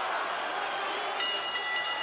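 Arena crowd noise, then about a second in the ring bell starts ringing to mark the end of the round.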